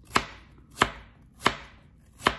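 Kitchen knife slicing through fresh turmeric root onto a plastic cutting board: three crisp chops, evenly spaced about two thirds of a second apart.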